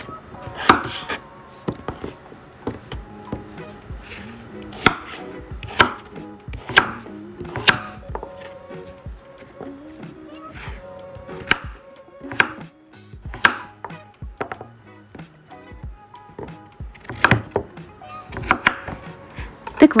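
Chef's knife cutting raw pumpkin into small cubes on a wooden cutting board. The blade strikes the board in irregular sharp knocks roughly a second apart, with a short lull before the last few.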